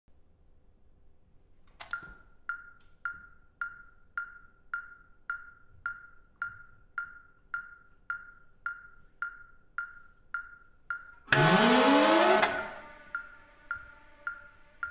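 Contemporary ensemble music: after a single strike, a short, dry percussive tick repeats steadily just under twice a second, like a clock counting. About eleven seconds in, a loud burst a little over a second long with falling pitches cuts across it, and then the ticking resumes.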